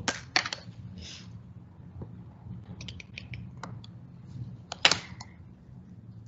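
Scattered clicks and taps from computer input while working an on-screen drawing tool: a few clicks at the start, a quick run of small ones about three seconds in, and a louder one near five seconds. A low steady hum runs underneath.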